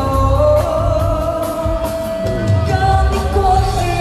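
Loud live band music with a woman singing into a microphone, holding long notes over a heavy bass beat.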